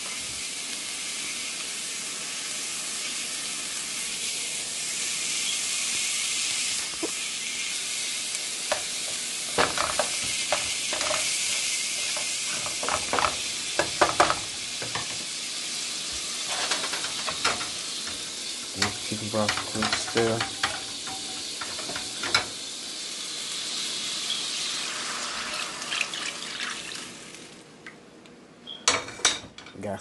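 Onion and garlic sizzling steadily in hot butter and oil in a nonstick frying pan, with a utensil clicking and scraping against the pan as it is stirred. Near the end the sizzle dies away as chicken broth goes into the pan.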